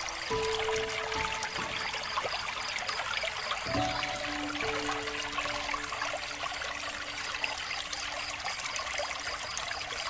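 Water trickling steadily from a bamboo water fountain, under soft background music of slow, held notes that change a couple of times.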